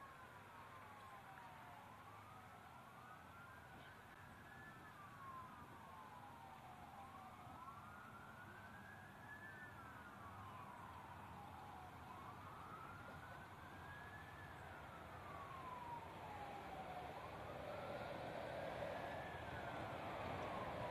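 Police car sirens, at least two slightly out of step, wailing in a slow rise and fall about every five seconds. They start faint and grow louder toward the end as the escort approaches.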